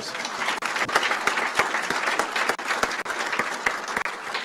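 Audience applauding: many people clapping at once, a steady dense clatter of claps.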